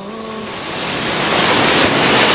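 Audience applause in a hall, an even clatter of many hands that swells steadily louder through the pause in the speech.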